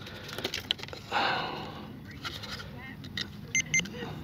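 Small clicks and rattles of hands handling a foam RC jet, a breath about a second in, then two short electronic beeps near the end.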